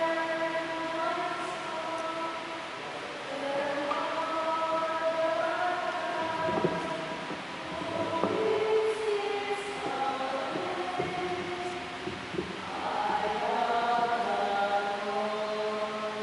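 Church choir singing a slow hymn in long held phrases, with a few faint knocks a little past the middle.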